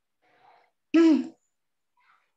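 A woman makes a single short vocal sound, such as a throat clear, about a second in.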